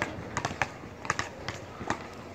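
Basketballs bouncing on an outdoor hard court: about half a dozen sharp, irregularly spaced thuds as a player dribbles and other balls land.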